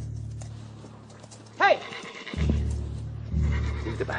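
A horse whinnies once, briefly, about a second and a half in, over film-score music with deep, slow drum beats.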